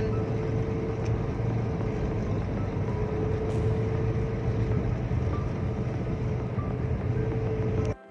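A car driving, heard from inside the cabin: a steady drone of road and engine noise, with a faint, even whine held throughout.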